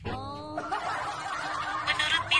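Laughter, snickering and chuckling, with several voices overlapping.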